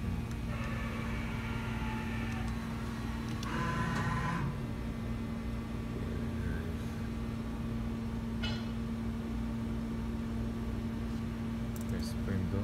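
Mori Seiki MV-40B vertical machining center running with a steady hum and one constant tone, with a few short, higher-pitched whirs in the first few seconds.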